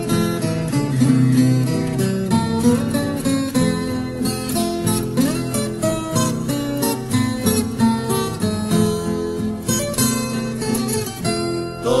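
Instrumental break in a Brazilian caipira song: acoustic guitars plucking and strumming a melody over a steady accompaniment.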